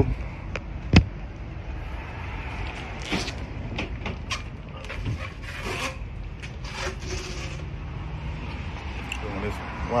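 A sharp knock about a second in, then scattered knocks and scuffs of handling over a steady low rumble, as tires are unloaded from a cargo van.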